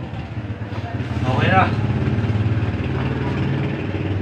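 A small engine running steadily at idle, with a brief voice about a second and a half in.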